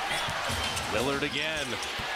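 Game broadcast audio heard quietly: a basketball being dribbled on a hardwood court, with a commentator talking over it.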